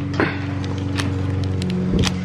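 Several sharp plastic clicks as a wiring-harness electrical plug is handled and worked loose, over a steady low machine hum.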